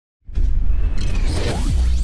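Cinematic intro sound effect: a deep bass rumble with sweeping whooshes, starting suddenly after a brief moment of silence.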